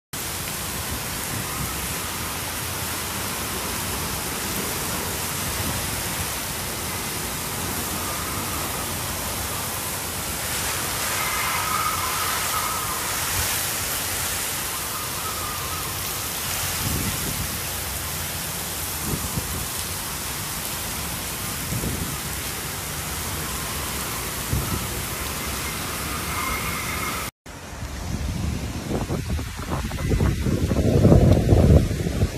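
Torrential wind-driven rain in a severe storm: a steady, loud rushing hiss with a few deeper low rumbles in the middle. Near the end, after a brief cut, strong gusts of wind buffet the microphone.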